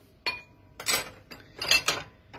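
Kitchen utensils clinking and knocking against a stainless steel wire dish rack and the dishes in it as they are put back and pulled out: a sharp clink with a short ring near the start, then a few more knocks about a second in and near the end.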